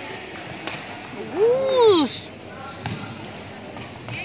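Badminton rally in a large hall: a few sharp hits, typical of rackets striking the shuttlecock, and, a little over a second in, one loud shout that rises and falls in pitch.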